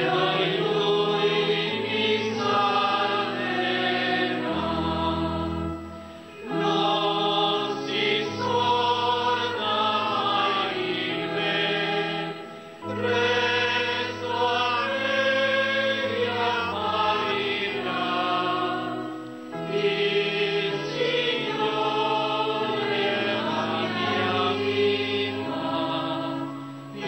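Slow hymn sung by a choir in long held chords over a deep bass line, in phrases of about six to seven seconds with short pauses between them.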